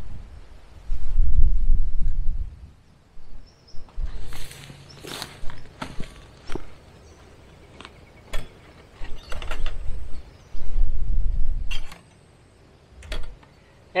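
Barbed fence wire being handled and pulled, with a scattering of short clicks and rattles, over two stretches of low rumbling wind noise on the microphone.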